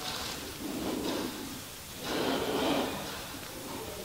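A person's breathing picked up close to the microphone: two slow, breathy swells, one about a second in and a longer one about two seconds in.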